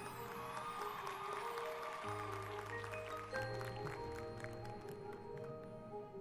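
High school marching band playing: held brass chords over percussion, with a low brass chord coming in about two seconds in.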